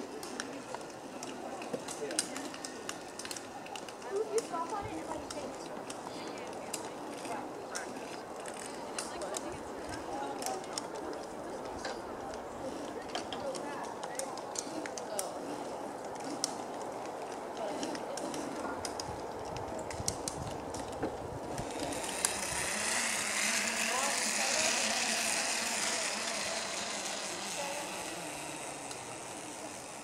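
Distant, indistinct voices with scattered light clicks. About two-thirds of the way through, a hiss swells up for a few seconds and then fades away.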